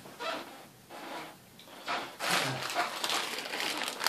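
A clear plastic bag of spare quadcopter parts crinkling as it is picked up and handled, starting about two seconds in after some quieter handling noise.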